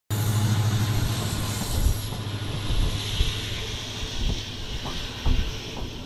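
Diesel locomotive running: a low, steady engine hum with hiss. The hum drops away about two seconds in, leaving hiss and a few scattered knocks as the sound slowly fades.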